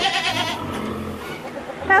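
A goat bleats once at the start, a short quavering call, followed by quieter rustling in the pen.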